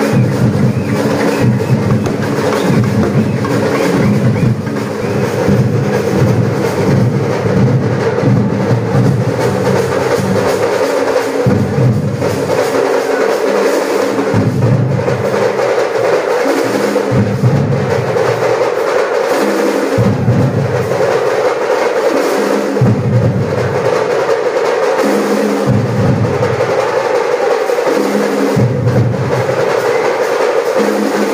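Live temple drumming with a steady drone behind it. The drums play in phrases that break off briefly every two to three seconds.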